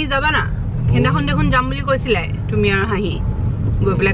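A woman's voice over the steady low rumble of a moving car, heard inside the cabin.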